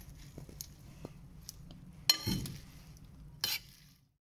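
Metal serving spoons tossing a dressed leafy salad in a ceramic bowl: soft rustling and crackling of leaves with small clicks. Metal clinks against the bowl about two seconds in, with a dull thud, and again near the end.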